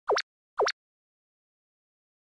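Two short bloop sound effects about half a second apart. Each is a quick dip in pitch followed by a sharp rise.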